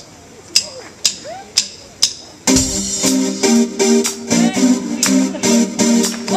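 A live smooth-jazz band starting a song: for the first two seconds or so only a few sharp ticks keep time, about two a second, then drums, bass and electric guitar come in together with a steady groove.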